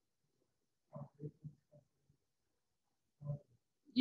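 Faint, muffled speech in a low voice: a few short syllables about a second in and another brief burst near the end, mostly quiet between them.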